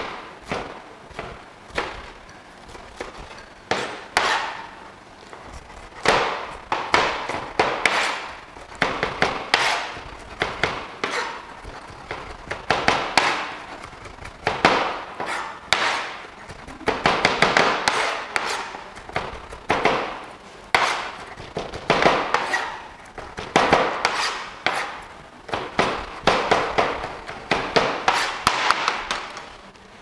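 Chef's knife chopping red onion on a plastic cutting board: a long run of unevenly spaced knife strikes against the board, about two a second.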